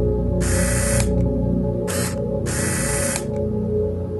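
Ambient background music with three short bursts of hissing noise laid over it: one about half a second in, a brief one at two seconds, and a longer one from about two and a half to three seconds.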